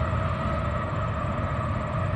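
Distant Union Pacific GE AC4400CW diesel locomotives approaching: a steady low rumble with a few steady higher tones over it.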